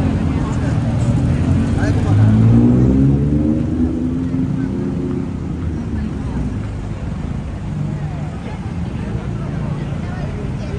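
A motor scooter engine revs up and passes close by. It is loudest two to four seconds in, then fades into the steady hum of street traffic.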